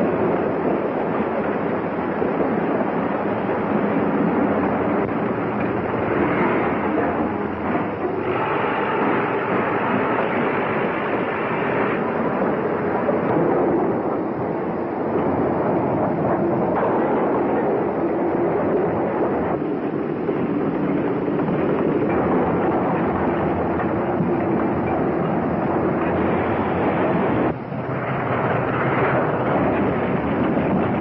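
Loaded logging train running along the track: a steady, dense rumble of the wheels and log cars, dipping briefly near the end.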